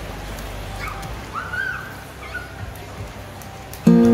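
A few short high calls that rise and fall, over a steady rushing noise; then loud background music starts abruptly just before the end.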